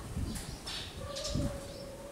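A bird calling: one steady low note lasting about a second, starting halfway in, over faint low background rumble.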